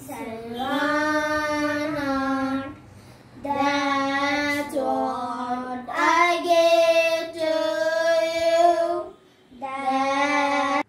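Two children singing together, unaccompanied, in long held phrases with short breaks between them.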